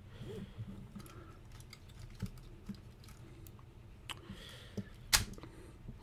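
Plastic parts of a Transformers Bludgeon action figure clicking and knocking lightly as they are handled and moved during transformation. A few sharper clicks come through, the loudest about five seconds in.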